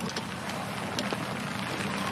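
Steady outdoor background hush of a golf course broadcast, with no distinct event standing out.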